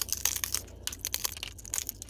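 Pine cone scales cracking and snapping off as they are pulled away with needle-nose pliers: an irregular run of sharp, dry cracks and crunches.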